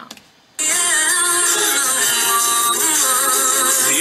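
A woman's singing voice over a musical backing track, starting suddenly about half a second in after a short pause.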